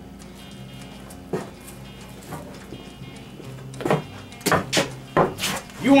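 Soft background music with a steady sustained bed, over which come a few sharp knocks: one or two faint ones early, then a louder cluster in the last two seconds.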